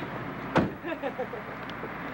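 A door shutting with a single sharp thump about half a second in, with faint voices around it.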